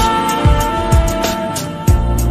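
Instrumental hip hop beat with no rapping: a few drum hits over a steady bass and held melody notes.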